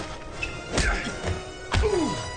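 Two heavy blows land about a second apart in a fist fight, the second the louder, over background music.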